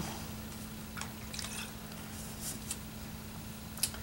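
Faint, brief rustles and small wet sounds of a cotton T-shirt rag being soaked with rubbing alcohol and handled, a few scattered short sounds rather than a steady pour.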